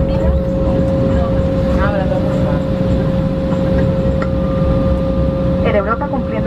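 Cabin noise of a jet airliner taxiing with its engines at idle: a steady low rumble with a constant whine, and a second, higher tone joining about four seconds in.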